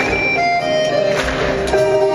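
Live band playing an instrumental passage of a Greek song, a melody of held notes over strummed acoustic guitar and drums.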